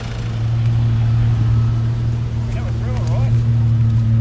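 Jeep engine idling with a steady low hum, and a brief warbling call about three seconds in.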